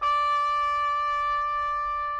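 Military bugle call: one long, steady held note.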